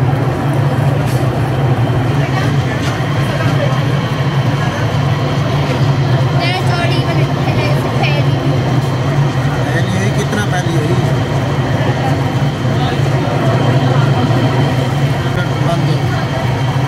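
Electric potter's wheel running at steady speed with a constant low motor hum while a small clay bowl is thrown on it.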